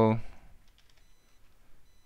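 Faint, sparse key clicks of typing on a computer keyboard, following the end of a spoken word at the very start.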